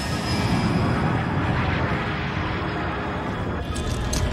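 Tense, dark film score playing over the steady rumble of a jet aircraft in flight.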